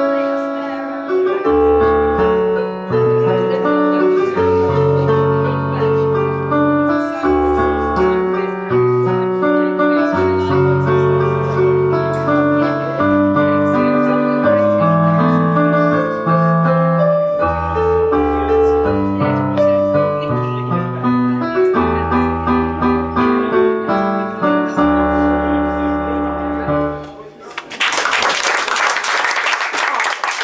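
Electronic keyboard with a piano sound played solo: chords and melody over a bass line of long held low notes. Near the end the playing stops and about three seconds of loud noise follow, then cut off suddenly.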